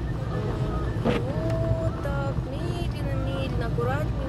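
Steady low rumble of engine and tyres on a wet road, heard inside a moving car, with a voice holding long, gliding notes over it.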